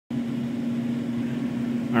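Cooling fan mounted in the lid of a metal enclosure, running with a steady hum that holds one clear tone. It is there to cool a MikroTik CRS305 switch inside the box.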